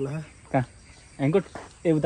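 Men speaking in short bursts with pauses between, and a faint steady high insect chirr in the background.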